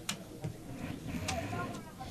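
Players' voices calling out on an open football pitch, well below commentary level, with a few sharp clicks.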